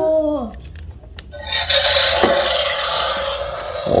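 Xie Ming XM 6811L toy remote-control excavator switched on: about a second and a half in, a steady hum sets in from the toy and keeps going.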